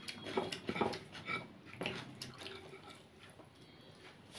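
Faint eating sounds of a meal of rice and fish curry eaten by hand: fingers working the rice on the plate and chewing, a scatter of small clicks that dies down after about two and a half seconds.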